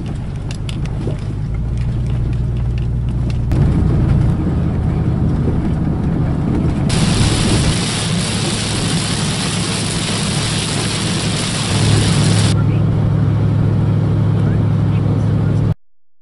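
Inside a truck's cab while driving: a steady low engine hum and road rumble, with scattered clicks in the first few seconds. From about seven seconds in, loud tyre hiss on a wet road takes over for several seconds. The sound changes abruptly where clips are joined and cuts off just before the end.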